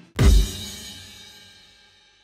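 Outro sting of a sports broadcast: a single loud drum-and-cymbal hit about a quarter second in, heavy in the bass, ringing out and fading away.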